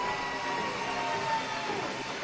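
Arena crowd noise: a steady, even hubbub from the stands at an ice hockey game, with a faint thin tone that sags slightly in pitch.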